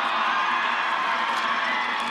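Football stadium crowd cheering and shouting as a steady, even wash of noise.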